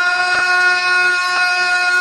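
Male voices holding one long, steady note of a Pashto noha lament, with two faint thumps about a second apart.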